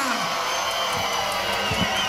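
A live audience cheering and applauding as a song ends, the singer's last held note dropping away at the start.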